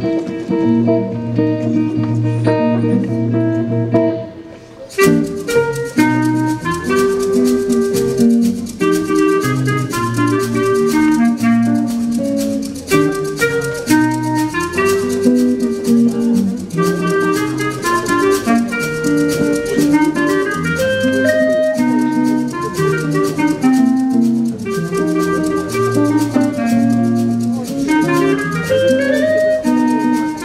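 Jazz band playing. Held guitar chords open it, then about five seconds in the drums and full band come in, with a clarinet playing the melody over guitar.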